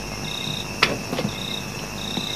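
Crickets chirping in short, high trills about once a second, with a single sharp click a little under a second in.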